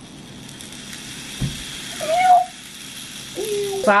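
The 5 Second Rule game's spiral tube timer running: small balls rolling down its twisting track make a steady hiss that stops just before the end. A soft thump comes about a second and a half in, and a cat meows once shortly after.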